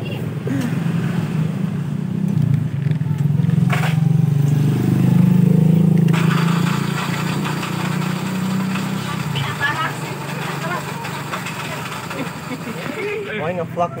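A motor vehicle engine, likely a motorcycle, passing close by: a low engine hum that swells over the first few seconds, peaks around the middle, and fades away after about nine seconds. Faint voices can be heard near the end.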